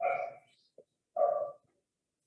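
A dog barking twice, two short barks a little over a second apart.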